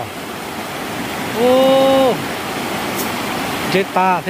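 Shallow rocky stream rushing over and around stones: a steady wash of water noise.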